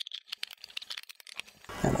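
A rapid run of small, sharp plastic clicks and taps as two 3D-printed power-supply enclosure halves are handled and snapped together, stopping about a second and a half in.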